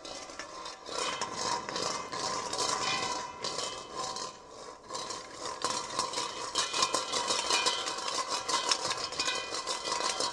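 A large metal bowl played by hand, scraped and tapped so its metal rings in several steady tones. Quick rattling taps grow denser in the second half.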